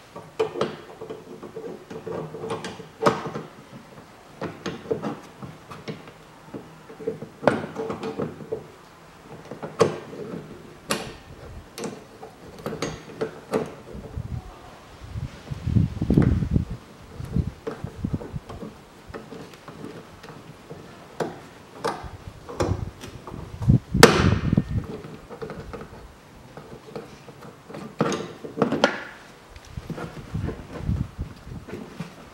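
Irregular metallic clicks and knocks of a wiper-arm puller being fitted and worked on a windshield wiper arm, with two heavier thumps, about sixteen seconds in and again about eight seconds later.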